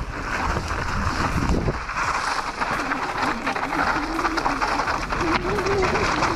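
Downhill mountain bike riding fast over a loose, rocky trail: tyres crunching and skittering over stones and the bike rattling over the rough ground, with wind noise on the microphone.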